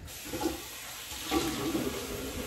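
Bathroom sink tap running steadily while shampoo is rinsed out of hair, the water splashing over the head.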